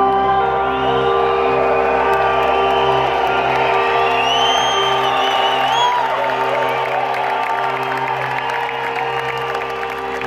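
Live band music playing through an arena sound system: steady held chords, with the crowd cheering and whooping over it, the whoops strongest around the middle. The music eases off slightly near the end.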